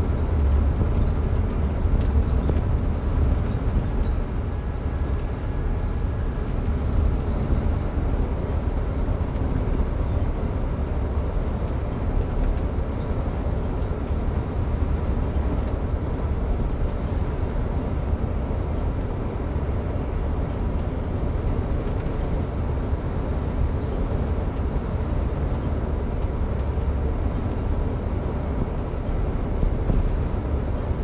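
Steady low rumble of a bus's engine and tyres, heard from inside the cabin while it drives along a mountain highway.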